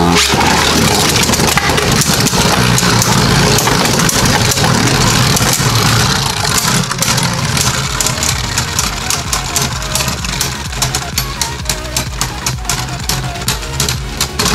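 Two spinning Beyblade Burst Turbo tops whirring across a plastic stadium floor and clashing against each other, with a dense run of sharp clacks. In the second half the clacks come further apart.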